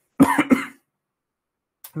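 A man's short cough, a few quick pulses over about half a second, close to the microphone.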